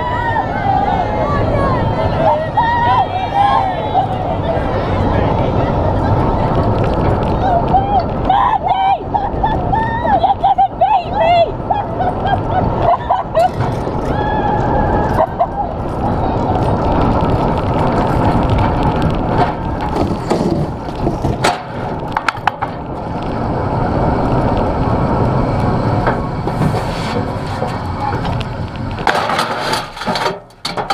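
Soapbox cart's hard wheels rolling and rattling on tarmac at speed, with spectators shouting and cheering early on and again a few seconds later. Near the end, a burst of sharp knocks as the cart crashes.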